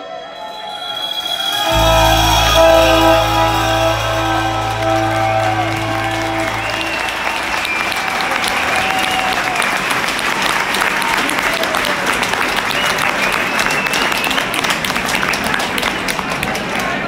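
A rock band's final chord rings out on bass and guitar for a few seconds and fades, while an audience applauds and cheers; the applause carries on steadily after the chord has died away.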